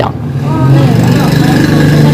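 A motor starts up about half a second in and runs with a steady low hum, under people talking.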